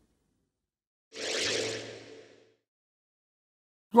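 A single whoosh transition sound effect about a second in: a swell of hiss over a low hum that fades away within about a second and a half.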